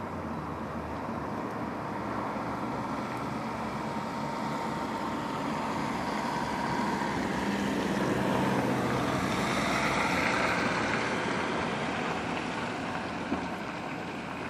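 Steady outdoor vehicle noise that swells to a peak about ten seconds in and then eases off, as of a vehicle passing, with a single faint click near the end.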